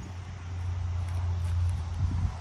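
A low, steady rumble that grows louder, with a faint hiss above it.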